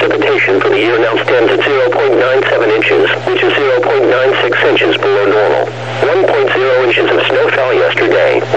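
Only speech: the computer-synthesized announcer voice of a NOAA Weather Radio broadcast reading the climate summary, with a steady low hum underneath.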